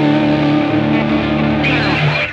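Rock outro music: a distorted electric guitar sustaining chords, with a sliding sweep near the end.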